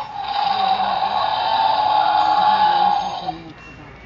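Mattel Jurassic World Baryonyx toy's electronic sound unit playing a recorded Tyrannosaurus rex roar, set off by the button that closes its jaw. One roar lasting about three seconds, fading near the end.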